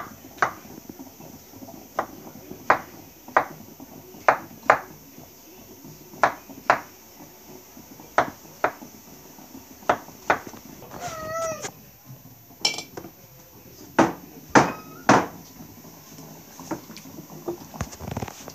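Chef's knife cutting through soft peeled peach halves and knocking on a wooden cutting board, sharp separate chops often in pairs, every second or so. A short wavering high-pitched cry sounds about eleven seconds in.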